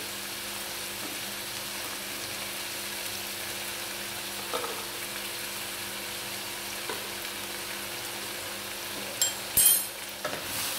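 Chopped vegetables frying in a non-stick wok, a steady even sizzle. A short, louder burst of sizzling or scraping comes near the end.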